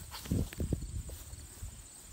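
Wagyu cattle moving close by in grass, with a calf nursing at its mother's udder: soft, irregular low thuds, strongest in the first second and then quieter.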